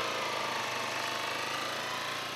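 Honda dirt bike engine running as the bike sets off, its pitch dipping and then rising again.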